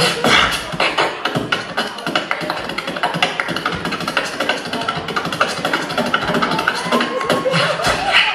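Beatboxer performing into a handheld microphone over a PA: a dense, fast run of percussive mouth sounds, with a sustained pitched tone rising slightly about six seconds in.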